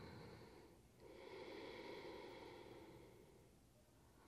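Ujjayi yoga breathing: slow, soft, faint breaths drawn through a narrowed throat. One breath ends just under a second in, and the next runs about two and a half seconds before fading out.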